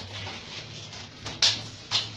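Manual wheelchair rolling down a concrete ramp, with two short hissing scrapes, one about one and a half seconds in and one near the end.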